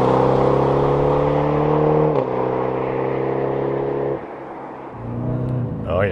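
BMW Alpina B8 Gran Coupe's 4.4-litre twin-turbo V8 accelerating hard away, its note rising, dipping at an upshift about two seconds in and then rising again. The sound drops away about four seconds in, and a steadier engine note returns near the end.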